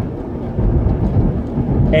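Steady low rumble of a moving car's road and engine noise heard from inside the cabin.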